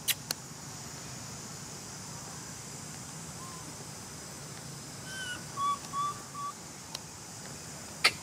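A few short whistle-like animal calls in quick succession about five seconds in, over a steady high hiss of forest ambience, with two sharp clicks at the very start.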